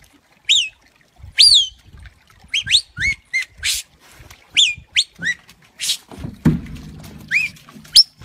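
A shepherd giving whistled commands to a working border collie: a string of short, sharp whistles, each sweeping up and then down in pitch, some in quick pairs.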